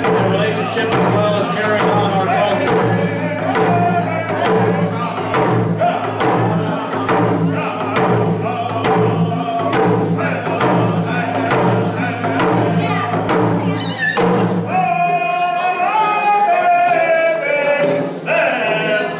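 Round dance song: men singing together while beating hand-held frame drums in a steady beat. About fifteen seconds in, the lowest part of the sound falls away and higher singing carries on over the drums.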